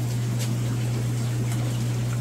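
Steady low hum of fish-farm equipment, with a faint even hiss of air bubbling through the tanks.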